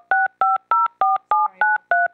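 Telephone touch-tone (DTMF) keypad dialling: a quick, even series of short two-note beeps, about four a second, each a different pair of pitches. A conference phone is dialling back into a WebEx meeting line after the connection was cut off.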